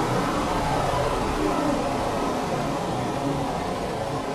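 Space shuttle launch sound effect: a steady, noisy rocket-engine rumble that slowly fades.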